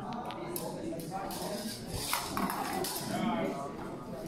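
Indistinct voices echoing in a large sports hall, with a few light metallic clicks in the first half second and one about two seconds in, from rapier blades touching.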